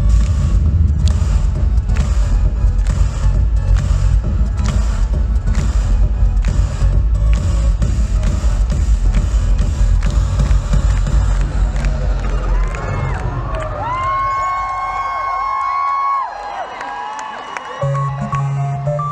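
Loud live concert music heard from the arena audience, a heavy electronic beat at about two beats a second over deep bass. About twelve seconds in, the beat and bass stop and the crowd cheers, with high screams sliding up and down.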